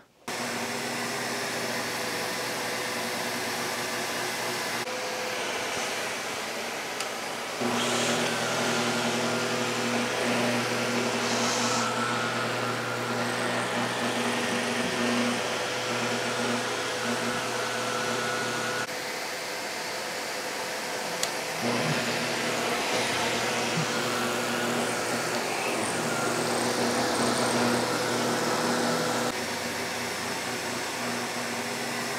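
Bosch Premium Electric Duo XXL canister vacuum (BSG81380UC) running on carpet: a steady motor hum and rush of air that starts suddenly. It gets louder about eight seconds in, drops back near nineteen seconds and rises again a couple of seconds later.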